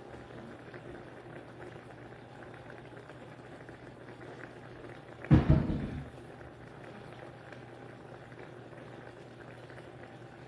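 Food cooking steadily on the stovetop with a faint steady hum underneath. About five seconds in comes a single loud, short thump and clatter.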